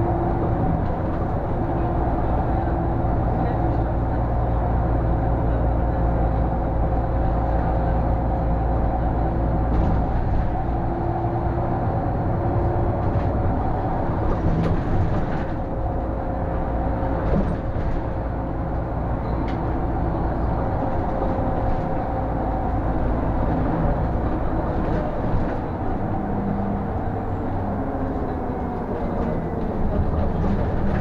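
City bus engine and drivetrain running on the move, heard from the driver's cab as a steady low drone with a steady whine over it.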